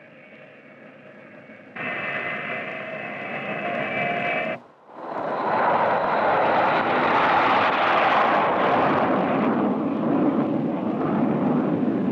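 Convair B-58 Hustler's four J79 turbojets: a steady whine with several held tones that grows louder about two seconds in, then, after a brief dip near five seconds, a loud steady jet roar through the takeoff run.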